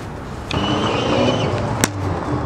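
A held high tone over a rushing sound starts about half a second in. Near the end a single sharp crack follows: a cricket bat striking the ball in a lofted shot.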